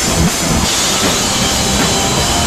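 Hardcore punk band playing live: loud distorted guitars and pounding drums, heavily overloaded on a camera microphone in the crowd.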